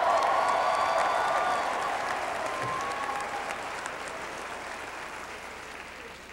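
Congregation applauding, loudest at the start and dying away over several seconds.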